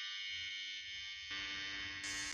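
Electric hair-clipper buzz played from a phone speaker held against a cat: a steady buzz with many even overtones that fills out a little over a second in.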